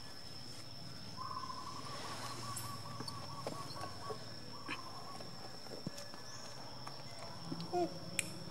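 Outdoor ambience around macaques: a faint steady high-pitched whine, a rapid trill lasting about three seconds starting about a second in, scattered light clicks, and a short call near the end.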